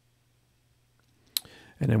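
Near silence with a faint low hum, broken about two-thirds of the way in by a single sharp click.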